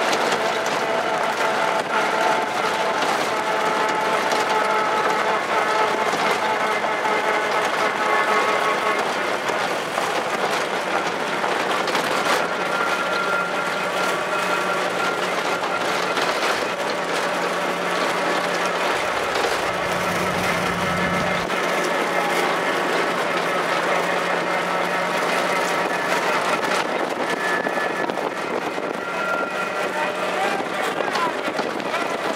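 Steady rushing noise of a vehicle driving at speed, with wind on the microphone, and a low steady hum through the middle of the stretch.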